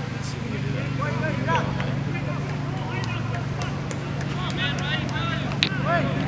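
Distant shouts and calls of players across a soccer field over a steady low hum, with one sharp knock near the end.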